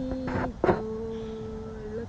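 A woman singing a little children's song in long held notes: a short note, a breath, then one long steady note held for over a second.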